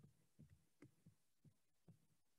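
Near silence with four faint computer keyboard keystrokes, spaced about half a second apart.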